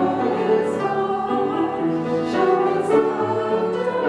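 Worship song sung by two vocalists over instrumental accompaniment, with sustained sung notes that change every half second or so at a steady level.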